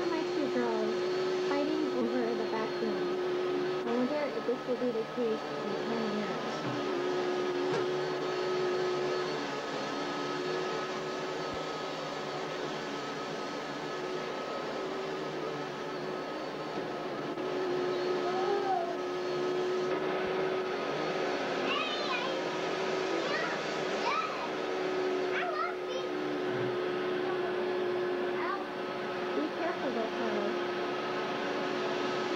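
Canister vacuum cleaner running with a steady hum, with small children's voices over it at the start and again, higher-pitched, in the second half.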